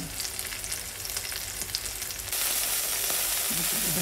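Chicken breast frying in a little oil in a nonstick pan on medium-low heat, sizzling with fine crackles. A little past halfway the sizzle jumps suddenly louder and steadier.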